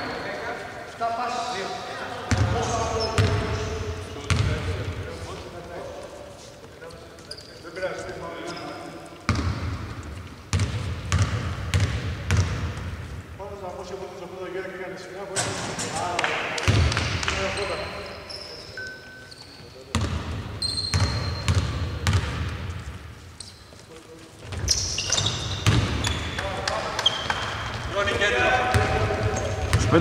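A basketball bouncing on a hardwood court, with sharp thuds at uneven intervals, and players' voices calling out in a large, near-empty indoor arena.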